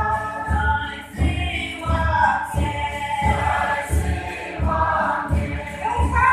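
A group of voices singing together in chorus over a steady low beat that repeats about twice a second.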